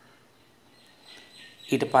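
Near silence, just faint background hiss, then a man's voice resumes speaking near the end.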